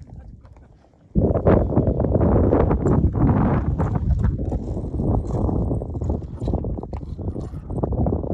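Wind buffeting the camera's microphone on an exposed summit: a loud, ragged low rumble that starts suddenly about a second in and keeps going.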